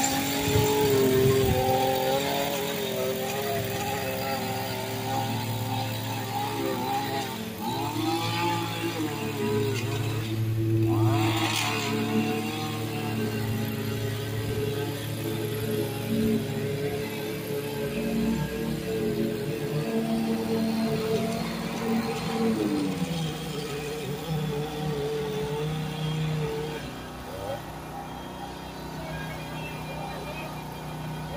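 Small petrol engines running steadily: the two-stroke engine of an Echo PE-2620 straight-shaft power edger cutting along a driveway edge, with a riding mower's engine also running. The drone drops in pitch about 23 seconds in and eases off near the end.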